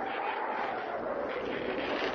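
A steady drone with a faint held tone over hiss, a sound-effect or music bed in an old radio-drama recording.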